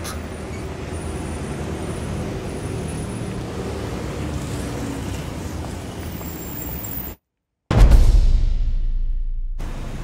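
Diesel being poured from a plastic jerry can into a new fuel filter, a steady pouring sound that cuts off abruptly about seven seconds in. After a half-second dropout, a louder low rumble starts and fades away.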